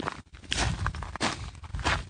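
Footsteps of a person walking, a few steps at an even walking pace.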